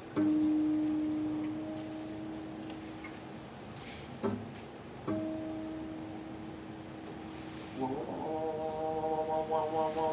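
Acoustic guitar: strings plucked together and left to ring on one mid-range note, dying away over a few seconds, then a click and a second pluck of the same note about five seconds in. Two strings sounding nearly the same pitch so that they beat, as in tuning a guitar by ear.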